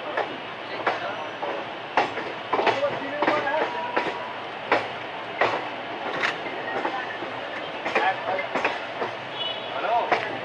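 Express train's passenger coach running over yard trackwork, heard from the open coach doorway: a steady rumble broken by sharp wheel clicks at uneven intervals as the wheels cross rail joints and points.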